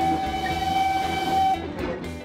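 Steam locomotive whistle sound effect: one steady whistle note held for about a second and a half over a hiss of steam, then cutting off.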